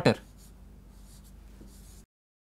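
Faint scratching of chalk on a chalkboard as a chemical formula is written, a few short strokes.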